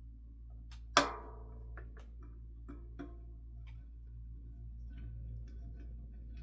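Small screws clicking against the resin vat's frame as they are pushed through the holes of the new release film: one sharp, ringing clink about a second in, then a few lighter ticks, over a low steady hum.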